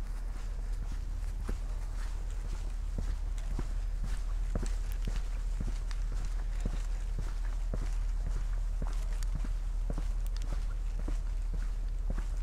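Footsteps of a person walking at a steady pace, about two steps a second, over grass and then a dirt path, heard over a steady low rumble.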